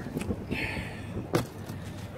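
Low outdoor rumble of wind on the microphone, with a brief hiss about half a second in and one sharp click about a second and a half in.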